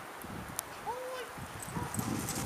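A dog's feet pattering as it runs across asphalt and grass, with one short rising-then-falling voice call about a second in.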